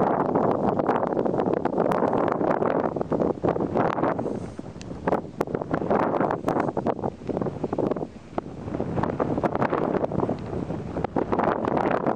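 Wind buffeting the camera microphone: an uneven, crackling rush that swells and eases in gusts, dropping off briefly a few times.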